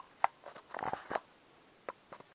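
Camera handling noise: a few small clicks and rubs as the camera is moved. The sharpest click comes about a quarter second in, a short cluster follows around the one-second mark, and one faint click comes near the end.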